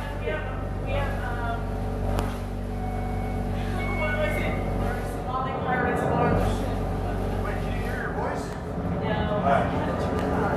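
People talking in a room, with a steady low hum underneath.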